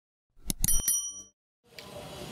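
Subscribe-button intro sound effect: a few quick clicks about half a second in, then a short, bright bell-like ding ringing out for about half a second. Near the end a steady hiss of room noise begins.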